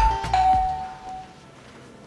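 Two-tone doorbell chime: a higher 'ding' then a lower 'dong' that rings on and fades out within about a second.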